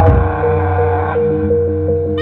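Javanese jaranan gamelan music: a big gong's low hum fading out within the first half second, while a tuned gong plays one note in quick, even strokes.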